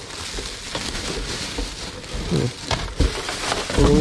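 Thin plastic shopping bag rustling and crinkling as it is handled and pulled out of a cardboard box, with a few light knocks in the second half.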